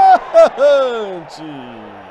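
A man's excited exclamation, one long call falling in pitch, over faint crowd noise.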